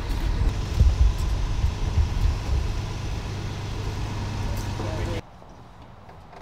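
A city transit bus running at the kerb, a steady low rumble with uneven surges in the low end. About five seconds in it cuts off suddenly to much quieter outdoor sound.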